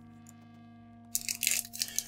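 Foil booster-pack wrapper crinkling and tearing in irregular rustles as it is peeled open around the cards, starting about a second in. Before that, only a faint steady hum.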